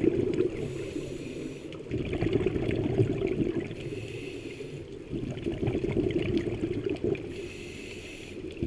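Scuba diver breathing through a regulator, heard underwater: the hiss of each inhale alternates with a longer, louder rush of exhaled bubbles, in a slow steady rhythm of about one breath every three and a half seconds.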